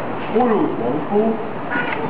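A boy's voice greets a toy in a sing-song, gliding tone ("harlo spongebob"). Near the end comes a short, high-pitched squeaky "hiiii" in reply.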